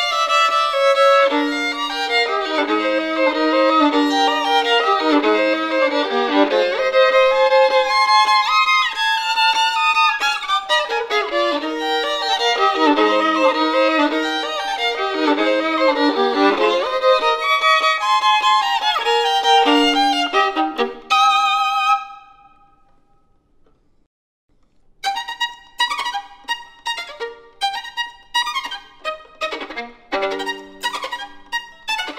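Solo violin playing a fast, busy variation of a theme-and-variations piece, with many notes in quick succession. About 21 seconds in it stops on a note that rings away. After about three seconds of silence a new variation begins in short, detached notes.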